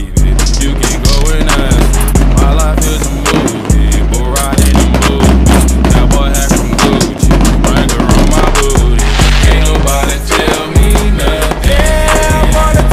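Loud backing music with heavy bass and a steady beat.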